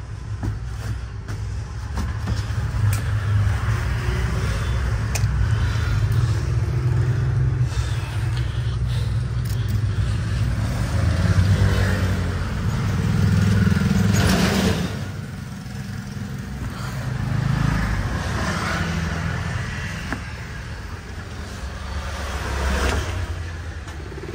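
Steady road traffic from the street outside, with vehicles passing and swelling louder now and then, mixed with scattered knocks and scrapes of someone climbing down a ladder from a loft.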